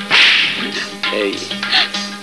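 A sharp swish-like sound effect starting at once and fading within about half a second. Background music with a steady low note runs under it.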